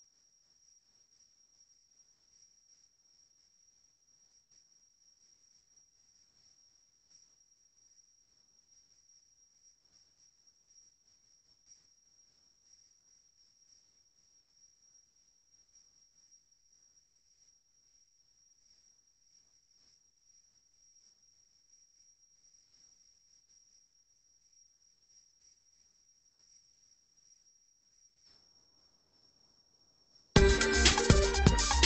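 Near silence: a faint, steady high-pitched whine with scattered soft clicks.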